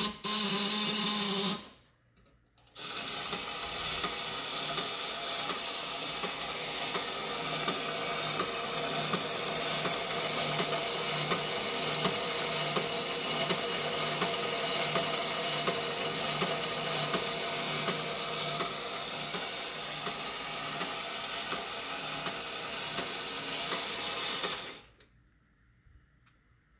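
The small battery-powered electric motor and tin gear and belt mechanism of a 1957 Stuctoy Explorer and Vanguard tracking station toy running with a steady whir and a regular click. It runs briefly, stops for about a second, then runs steadily until it stops near the end. The toy, rusted and inoperable before, is working again after its battery contacts were cleaned and its wires and belts reconnected.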